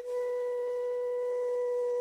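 Flute music holding one long, steady note.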